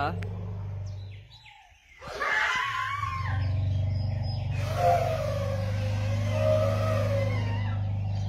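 Asian elephants vocalizing in an excited greeting. A low bellow fades out about a second in. From about two seconds comes a short trumpet-like blast, then a long low bellow with a wavering higher tone over it.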